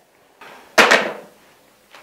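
Telephone handset hung up hard on its cradle: one sharp clack about three-quarters of a second in, with a short fading tail.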